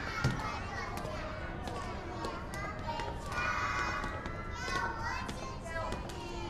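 A group of young children chattering and calling out together, many small voices overlapping at once.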